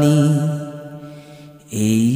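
A solo voice singing a Bengali devotional song holds the last note of a line, fading away over about a second and a half, then starts the next line with a sung 'e' near the end.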